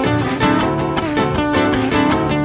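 Live acoustic band music in an instrumental passage without vocals, led by guitar playing quick picked notes.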